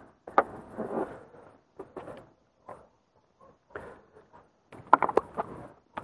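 Handling noise in a car boot: soft rustling and light knocks as hands move the fabric charging-cable bag and touch the boot's plastic side trim, with a sharp click under half a second in and a cluster of clicks about five seconds in.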